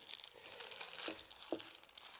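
Baking paper crinkling faintly as a baked papillote parcel is untwisted and unwrapped.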